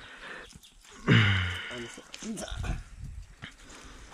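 A man's short vocal sound about a second in, followed by a few fainter voice fragments and soft low thumps.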